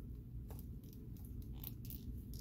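Faint clicks and handling noise of a plastic action figure being turned in the hands, over a low steady hum.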